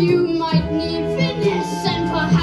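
A child singing a musical-theatre song over instrumental accompaniment. A held sung note ends about half a second in while the music plays on.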